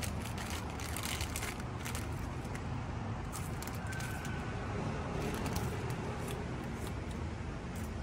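Steady city-street traffic noise, a low rumble, with scattered light crackles from a crisp packet being handled.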